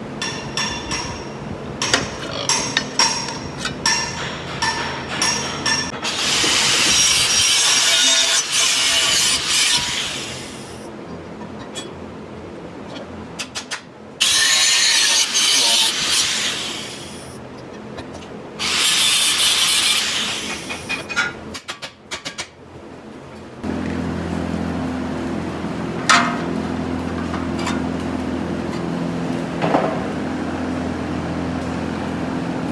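Corded angle grinder with a cut-off wheel slicing partway into a sheet-metal strip clamped in a vise, in three loud cuts of a few seconds each, after several seconds of knocks and clicks on the metal. Near the end a steady low hum takes over.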